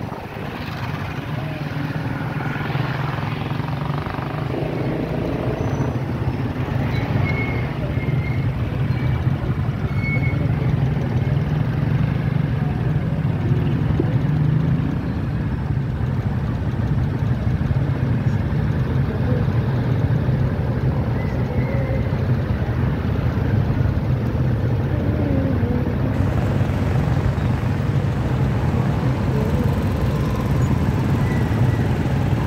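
Motor vehicle engine and street traffic, a steady low hum under an even rumble of road noise, with wind on the microphone in the first few seconds.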